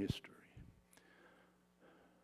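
A man's spoken word ends right at the start and its echo fades, leaving a pause of near silence with a faint steady hum. A soft breath comes just before the end.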